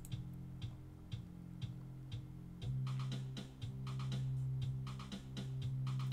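Bass line and drum beat played back from Ableton Live, with short drum hits about twice a second over a steady bass note that grows louder about two and a half seconds in. The sidechain compression is switched off, so the bass holds steady instead of ducking under each kick.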